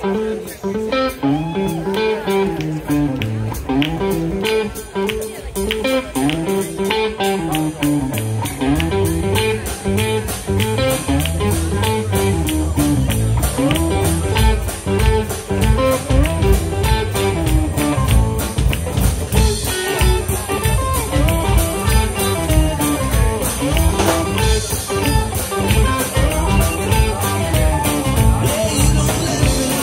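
Live blues-rock band playing an instrumental intro on electric guitars, bass, keyboard and drums. A repeating riff opens it, and the band comes in fuller and heavier about eight seconds in.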